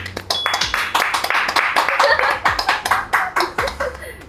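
Two people clapping their hands in quick, steady applause, with a brief high ping near the start.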